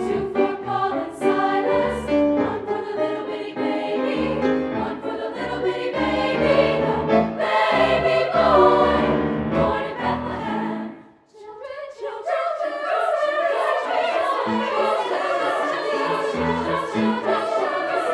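Treble choir singing a gospel spiritual in several voice parts, with a sudden full stop about eleven seconds in, a moment's silence, then the choir comes back in.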